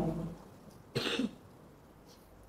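A man's single short cough behind his hand, close to a microphone.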